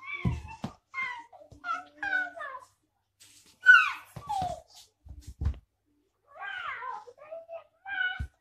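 A toddler's voice making short, high cries that slide down in pitch, dinosaur noises for his T. rex toy, with a few dull thuds of the toy on the floor.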